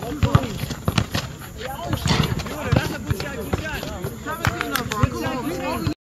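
A basketball bouncing on an asphalt court as players dribble, heard as many sharp knocks, with players' voices around it.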